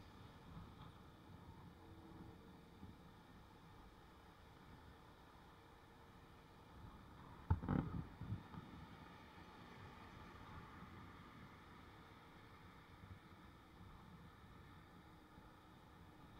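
Faint low rumble of a moving motorbike picked up by its action camera, with one sharp knock and a few smaller ones about halfway through.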